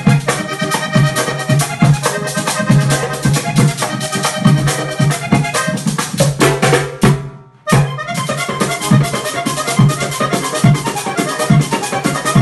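Accordion playing a lively melody over a steady drum beat. A little past the middle the music fades out and comes back in sharply about half a second later.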